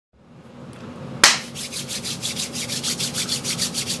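One sharp hand clap, then hands rubbed briskly together, about seven quick scratchy strokes a second.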